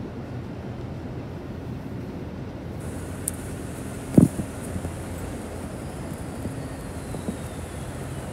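Street traffic, a steady low engine rumble, with one short thump about four seconds in.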